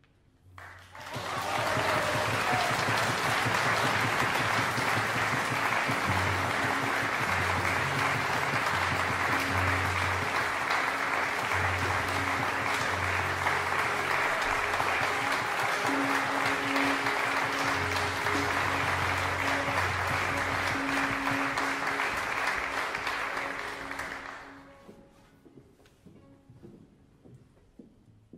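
Audience applauding steadily for over twenty seconds after the music stops, then dying away near the end. A few low held instrument notes sound faintly beneath the clapping.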